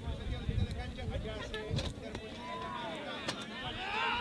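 Indistinct voices of players and spectators calling and shouting at an outdoor football match, with a louder rising shout near the end, over a steady low rumble.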